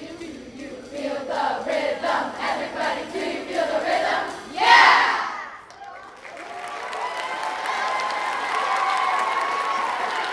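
A large school choir singing the last phrase of a song over a steady beat, ending about halfway through on a loud rising shout. The audience then cheers and claps.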